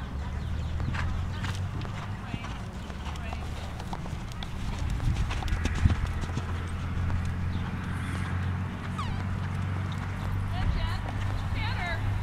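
Hoofbeats of a horse cantering on a sand arena, with a louder thud about six seconds in.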